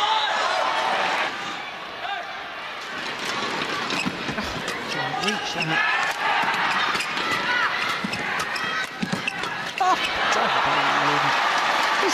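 A badminton doubles match in an arena: sharp racket hits on the shuttlecock and short shoe squeaks on the court, over crowd noise. Near the end the crowd grows louder, cheering.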